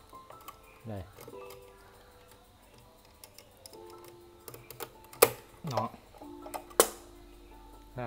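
Metal clicks of a gilded clock pendulum being hooked onto its mount, with small ticks and two sharp, loud clicks about five and seven seconds in. Faint held musical notes run underneath.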